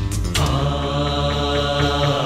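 Malayalam film song: after a short break, a voice holds one long, steady note over the backing music, with a light regular beat underneath.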